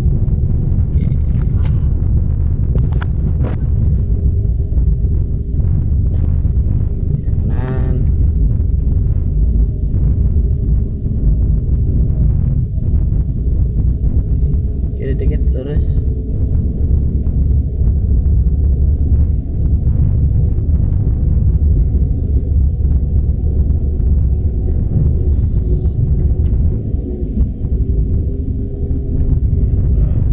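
Steady low rumble of a car's engine and road noise, heard from inside the cabin as a manual car is driven slowly. Short voice sounds come through about a quarter and half of the way in.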